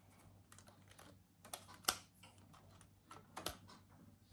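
Clear plastic candle mold clicking and knocking as it is handled and pulled apart to release a wax candle: a few sharp clicks, the loudest just before two seconds in.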